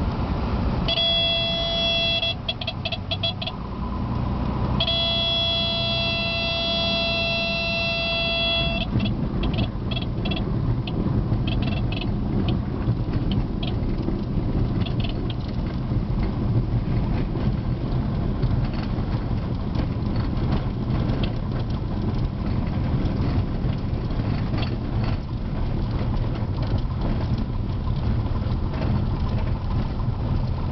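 Cessna 182's stall warning horn sounding over the engine and propeller noise, first in short broken bursts and then as a steady tone for about four seconds as the plane flares to land. After that the engine runs steadily at low power while the airframe rattles and knocks over the bumps of a grass runway during the rollout.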